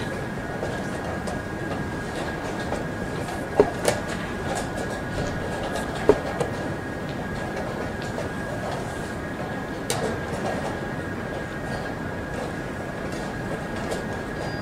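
Steady room noise with a faint constant high tone, broken by a few sharp clicks from the blitz game: wooden chess pieces set down and the chess clock pressed, a quick pair about three and a half seconds in, then single clicks near six and ten seconds.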